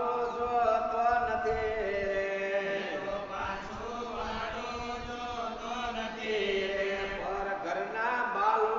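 Devotional mantra chanting in long, held notes that bend slowly in pitch.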